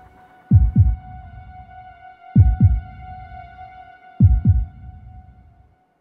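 Slow heartbeat sound effect: three double thumps (lub-dub), a pair about every two seconds, with a fourth starting at the end. Under them runs a steady, held droning tone.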